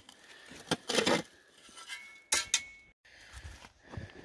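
Steel shovel blade striking and scraping against rock and gravel as it pries a loose slab of bedrock free. A few sharp metallic clinks come through, a cluster about a second in and the loudest about two and a half seconds in with a brief ring, then quieter scraping.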